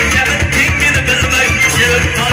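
Live amplified band music with a drum kit, a steady low beat and a wavering, ornamented high melody line.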